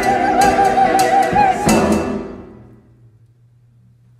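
Church choir singing the final held chord of an anthem, the top voices wavering with vibrato over accompaniment with sharp accented strokes. The chord cuts off about two seconds in and rings away in the room, leaving a faint low steady hum.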